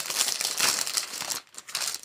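Crinkly packaging rustling and crinkling as it is handled, dying away about three-quarters of the way in with a couple of faint rustles after.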